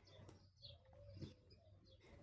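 Near silence, with a faint bird call in the background.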